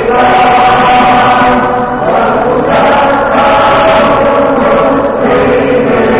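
A large crowd singing together in unison, many voices holding long notes, with short breaks between phrases.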